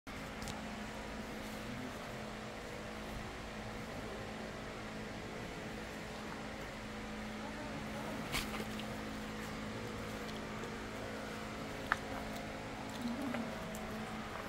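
A steady mechanical hum with a few held tones, broken by a short sharp click about eight seconds in and another near twelve seconds.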